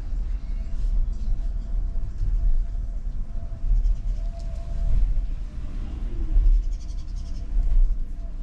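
Low, uneven rumble of a car heard from inside the cabin as it rolls slowly forward.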